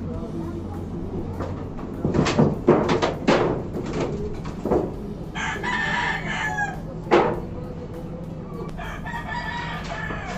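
A rooster crowing twice, once about five seconds in for just over a second and again near the end. Several sharp knocks come before the first crow, and one more follows it.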